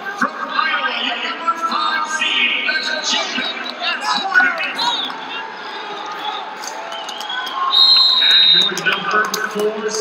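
Voices calling out in a large arena during the final seconds of a college wrestling bout. Near the end, a high, steady tone of about a second sounds as the match clock runs out, signalling the end of the match.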